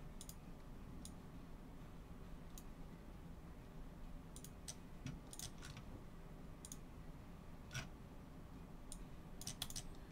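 Faint, scattered clicks of a computer mouse and keyboard, single clicks spread out with a few quick runs, the quickest just before the end.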